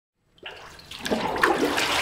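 Water and paper-pulp slurry sloshing in a hanji vat as the papermaking screen is scooped through it in the first front-to-back dip (apmuljil). It starts about half a second in and grows louder.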